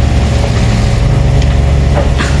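Loud, steady low rumble aboard a sailing yacht under way, with an even hum in it.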